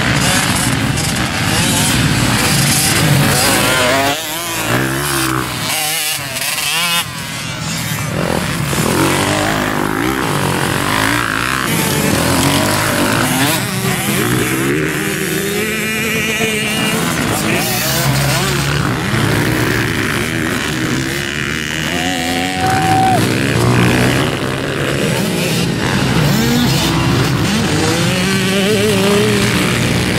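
Motocross bikes racing on a dirt track, their engines revving up and down as the riders work the throttle over the jumps and corners, the pitch rising and falling again and again.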